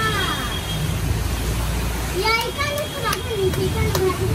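Children's voices, high-pitched calls and chatter with a falling call at the start and more excited voices through the second half, over a steady low rumble.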